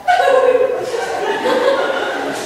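A woman laughing, a chuckling laugh that starts suddenly and goes on in short bouts.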